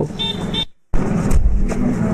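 Street traffic: a motor vehicle running close by, with two short high beeps in the first half second. The sound cuts out to silence for a moment just before one second in.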